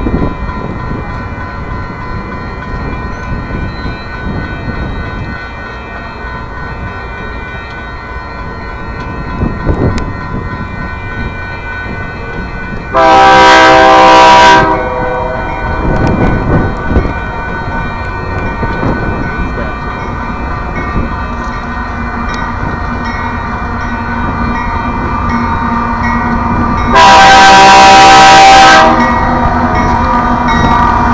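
Diesel locomotive horn on an approaching Union Pacific coal train sounding two long blasts, each about a second and a half, the second about fourteen seconds after the first. Under them a grade-crossing bell rings steadily and the train's rumble grows louder.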